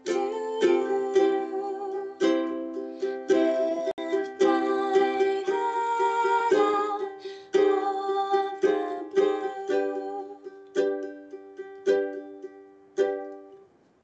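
Ukulele strumming chords in a song, with a woman singing over it in the first half. Later the strums come singly and further apart, each left to ring and fade.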